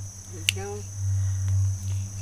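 Steady high-pitched drone of insects, such as crickets, in the background, over a low steady hum that swells about a second in. A single click falls about half a second in.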